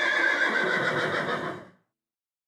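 A horse whinnying for about a second and a half, cut off sharply at the end.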